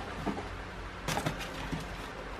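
A cardboard box being handled: a few light scrapes and taps, the loudest a little over a second in, over a low steady hum.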